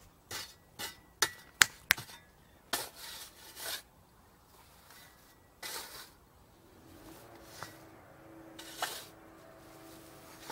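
A steel shovel digging into dry soil and tossing it. There are several sharp clinks of the blade in the first two seconds, then a few scoops of dirt are scraped up and thrown.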